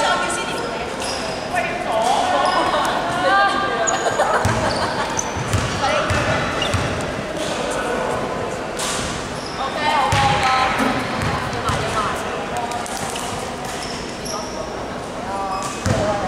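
Players' voices calling out in a large echoing sports hall, with a basketball bouncing on the hardwood court a few times.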